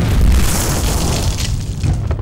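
Explosion sound effect: a loud boom with a deep rumble that slowly dies away.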